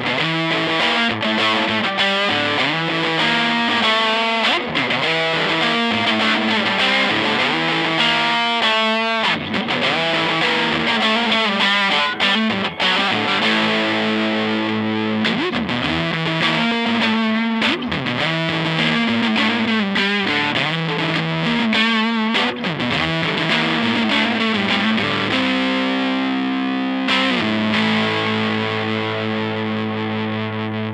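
G&L ASAT Classic electric guitar played through a Fulltone GT-500 drive pedal with heavy distortion: fast riffs of chords and single notes, then held chords left to ring and fade near the end.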